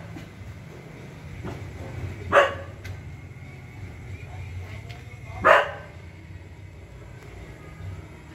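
A dog barking twice, single short barks about three seconds apart, over a low steady hum.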